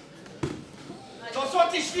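A single dull thud of an impact about half a second in, followed from about a second and a half by a man shouting.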